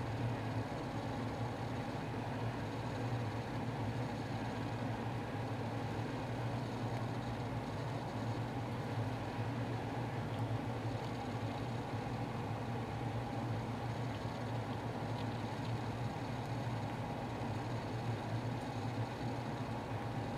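Steady low mechanical hum with an even hiss behind it, unchanging throughout.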